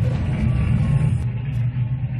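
A loud, steady low rumbling drone with fainter sounds above it.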